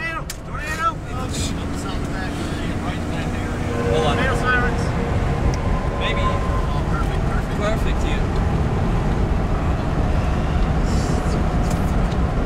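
Steady road and engine rumble inside a moving car, a little louder from about four seconds in, with faint voices.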